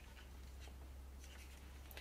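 Faint rubbing and handling sounds as hands turn a trinocular stereo microscope head, over a low steady hum.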